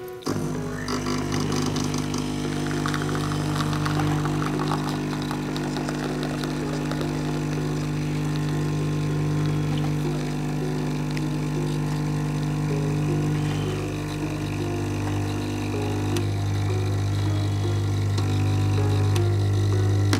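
AGARO Imperial 15-bar espresso machine's vibratory pump buzzing with a steady, even hum as it pulls an espresso shot, starting as soon as the brew button is pressed.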